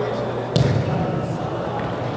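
A soccer ball struck once, a sharp thud about half a second in that echoes through the large indoor hall, over the steady sound of players' voices.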